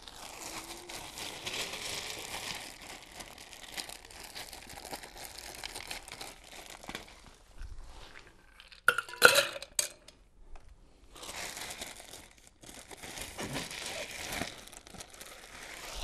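Ice cubes being dug out of an ice chest, a long rustling and crunching, then a quick run of sharp clinks about nine seconds in as the ice drops into a metal cocktail shaker, followed by more rummaging for ice.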